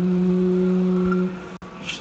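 A man's voice chanting, holding one long steady note that fades out about a second and a half in.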